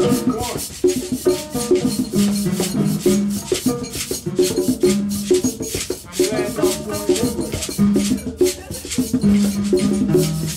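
Live hand-percussion jam: congas playing a dense, steady groove of short pitched tones, under constant rattling from shakers and fast clicks from sticks.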